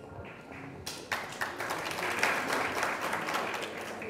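An audience applauding in a hall. The clapping starts about a second in and carries on steadily, easing off slightly near the end.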